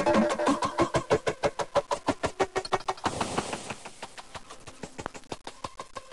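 Experimental hardcore techno played from a 45 RPM vinyl record: a fast run of sharp, clicky drum hits with short pitched notes. About three seconds in there is a brief hiss swell, and the music then drops much quieter to sparser clicks and faint held tones.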